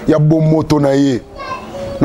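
Speech only: a man talking, with the talk dropping to quieter sounds a little past the middle.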